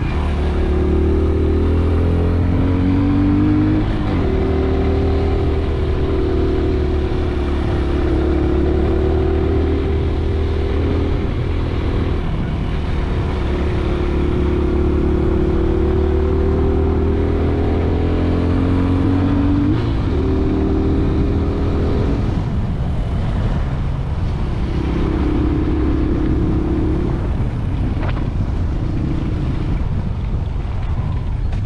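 Motorcycle engine running steadily as it climbs a mountain road, its pitch rising and falling slowly with speed and throttle.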